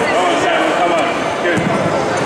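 Many spectators talking over one another in a large, echoing sports hall, with a dull thud of a fighter's foot on the wooden floor about one and a half seconds in.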